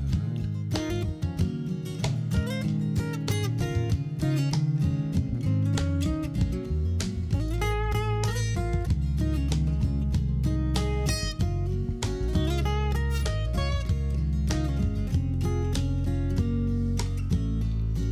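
Instrumental break of a folk song: acoustic guitar playing over electric bass and cajón, with no singing.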